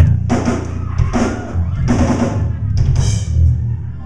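Live rock drum kit played loudly between songs: bass drum and snare hits with several cymbal crashes over a heavy low rumble.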